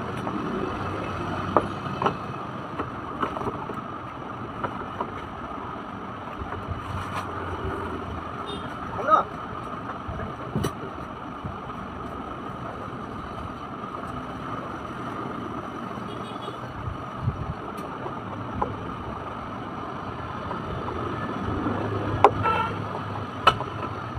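Occasional sharp clicks and knocks of hard plastic as the parts of a children's plastic swing car are handled and screwed together with a hand screwdriver, over a steady background noise.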